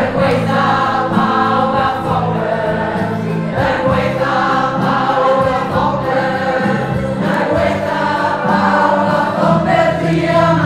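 A group of women singing a song together in chorus, loud and continuous, with sustained held notes.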